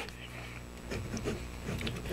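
Faint, irregular scratching of a PenBBS 535 fountain pen's fine steel nib writing on paper, over a low steady hum. The nib glides smoothly, with no feedback.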